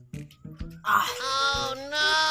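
A drawn-out, wavering wailing voice starting about a second in, over background music.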